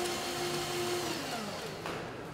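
A small electric motor runs at a steady speed, then slows down with a falling pitch in the second half.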